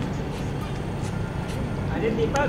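A car engine idling, a steady low rumble, under faint background chatter, with a few light clicks.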